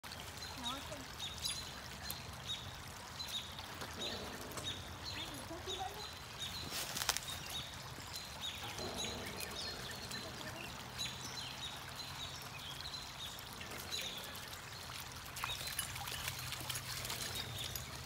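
Shallow rocky creek water trickling steadily over stones, with frequent short high chirps repeating throughout.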